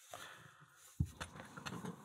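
A sharp click about a second in, then a few faint ticks: a pair of tweezers being picked up from a plastic workbench tray.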